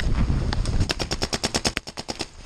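Paintball markers firing a rapid string of shots, about ten cracks a second, starting about half a second in and running on to near the end. A low rumble underlies the first second.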